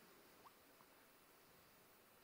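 Near silence: faint lecture-hall room tone, with two tiny, brief squeaks about half a second and just under a second in.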